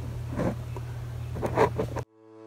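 A low, steady hum with a few brief soft knocks and rustles from things being handled at a kitchen sink.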